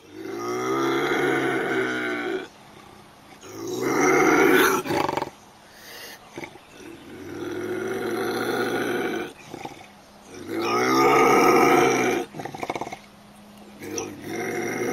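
A monkey calling loudly in four long calls of about two seconds each, with a pause of about a second between them.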